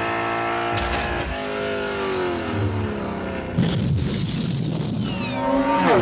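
Speeder bike engine sound effects: layered engine whines, several falling in pitch as the bikes pass by. A rougher rushing noise comes in about halfway through.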